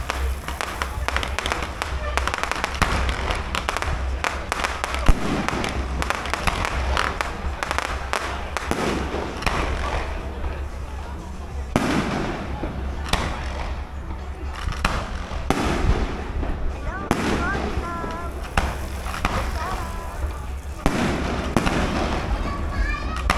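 Fireworks display: aerial shells bursting in a steady run of bangs and crackles, with one sharper bang about five seconds in.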